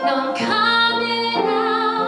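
A woman singing a musical-theatre song live into a microphone, holding long notes.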